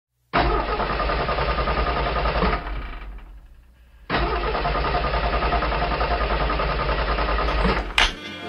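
Car starter cranking an engine that will not catch. One try of about two seconds trails off, then a longer try of nearly four seconds cuts off suddenly. The car keeps failing to start.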